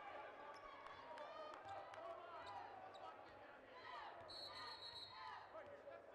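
Arena sounds of a basketball game: a basketball bouncing on the hardwood floor and shoes squeaking, over faint crowd chatter. A steady high tone lasts about a second a little after the middle.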